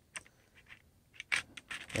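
Light, scattered plastic clicks and taps as the plastic body shell of an Athearn Genesis GP9 HO model locomotive is slid back and forward and worked down onto its chassis, the loudest click a little over a second in.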